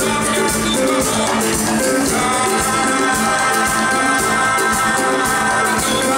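A live band plays a song: a male singer with acoustic guitar and a second guitar. A long note is held through the second half.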